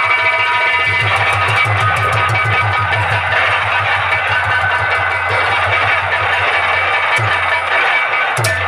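Live nautanki band music: fast, steady drumming with a bright melody played over it.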